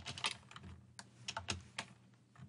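Computer keyboard keys being pressed in a quick, uneven run of about ten keystrokes, some bunched close together: typing while editing a line of code.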